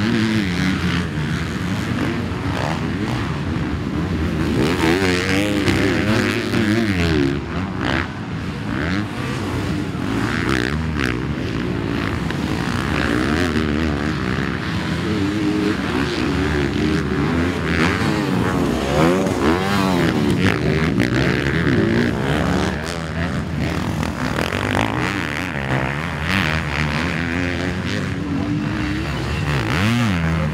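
Honda four-stroke motocross bike engine racing on a dirt track, revving hard and shifting so that its pitch rises and falls again and again. Another bike's engine is heard alongside it.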